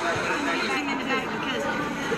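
Speech: people talking, with no other sound standing out.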